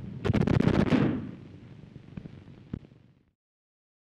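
Thompson submachine gun (Tommy gun) firing a short burst of about ten rapid shots in under a second. A single sharp crack follows about two seconds later, and the sound cuts off suddenly soon after.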